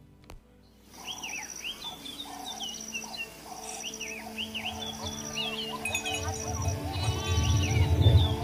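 After about a second of near silence, a documentary soundtrack starts: soft music with held tones and a low bass that swells from about six seconds in. Over it are outdoor animal sounds, many short high chirping calls and goats bleating.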